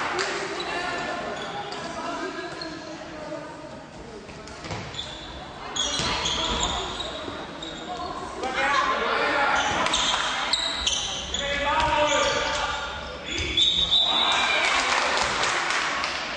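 Handball bouncing on a sports-hall floor amid players' and spectators' voices calling and shouting, echoing in the hall, with louder surges of voices in the second half.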